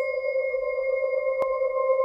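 Singing bowls ringing in sustained, pure tones: a higher, bright tone rings on over a steady lower one. There is a single sharp click about one and a half seconds in.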